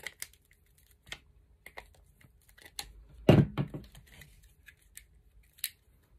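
A scatter of small, sharp plastic clicks and handling sounds as pliers squeeze the hinged section of a Clipsal quick-connect surface socket shut onto the cable, pressing the conductors into their grooves.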